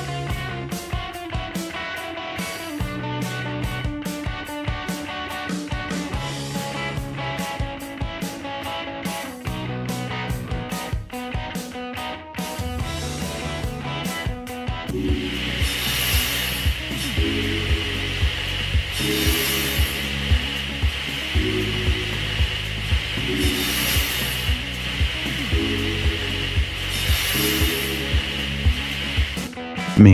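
Background music: plucked, guitar-like notes in a steady rhythm, changing about halfway to a fuller beat with a bright swell every few seconds.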